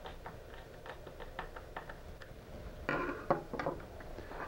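Faint small clicks and ticks of a Phillips screwdriver tightening the screw of a trolling motor's cable strain relief. About three seconds in comes a short burst of louder clicks and rustling as the cable and wires are handled.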